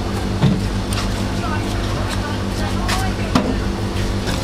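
Large kitchen knife chopping pineapple on a wooden chopping block, a few irregular knocks of the blade against the wood, over a steady low hum and faint background voices.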